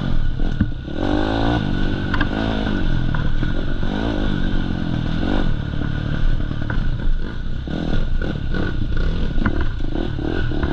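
Enduro dirt bike engine revving up and down over and over as the bike rides a rough, rutted trail. Knocks and rattles from the bike jolting over the bumps come through with it.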